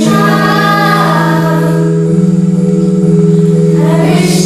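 Children's choir singing with sustained instrumental accompaniment. The voices hold a phrase that fades out about halfway through, leaving long held accompaniment notes that move to a new note about two seconds in.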